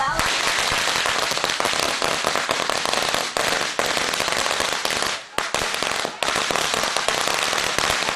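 A long string of Chinese firecrackers going off in rapid, continuous bangs. The bangs drop away briefly about five seconds in, then carry on.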